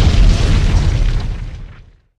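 An explosion sound effect: a loud, deep, rumbling blast that is already under way, then fades away over the last second and ends just before the close.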